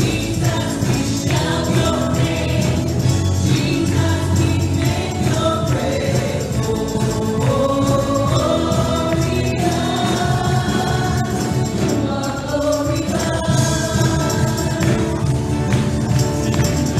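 A live worship song: several women sing together into microphones over a band with electric guitar.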